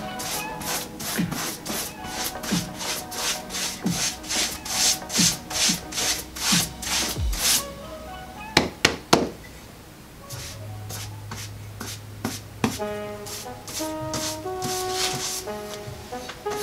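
Wide flat paintbrush dry-brushing white acrylic over a dark-painted board: quick, scratchy, evenly repeated strokes, about two a second, that stop about halfway through, followed by a few sharp taps. Background music plays throughout.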